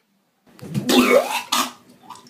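A person's loud, hoarse, cough-like vocal outburst starting about half a second in, followed by a shorter second burst near the end.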